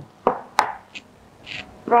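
Two short knocks about a third of a second apart, as a thick glass block sample is set down and shifted on a display counter.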